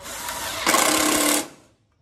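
Cordless impact driver driving a zip screw through a gutter end cap: the motor spins up, then it hammers loudly for under a second and stops about a second and a half in.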